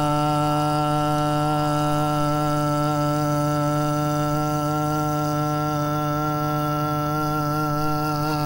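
A man singing one long held note on the word "ช้าง" (chang, elephant), steady in pitch, with a slight waver setting in during the last couple of seconds.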